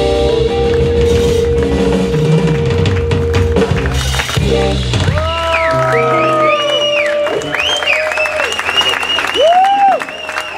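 Live blues band of electric guitar, electric bass and drum kit playing the closing bars of a song, with a long held guitar note and a cymbal crash about four seconds in. After about five seconds the bass and drums fall away, leaving high sliding, wavering tones as the song ends.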